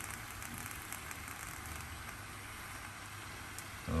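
Water boiling in a paper saucepan on an electric hot plate: a steady bubbling hiss with small crackles now and then, the water nearly boiled away.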